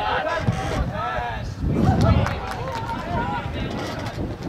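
Voices calling out across an outdoor soccer field during play, over a low rumble that swells about two seconds in.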